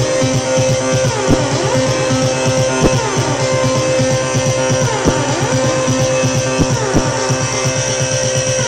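Electronic dance music played loud over a club sound system from a DJ set: a steady held synth note with synth sweeps gliding up and down every second or two over a fast pulsing bass, with a few sharp hits.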